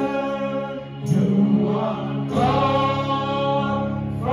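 Gospel praise song sung by several worship singers through microphones, in long held notes with a brief dip about a second in.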